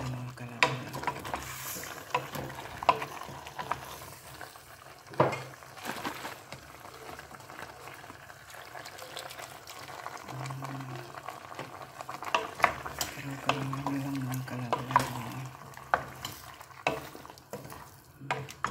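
A wooden spoon stirring chunks of pork and taro in a stainless steel pot, with scattered knocks of the spoon against the pot over a low sizzle of the meat frying.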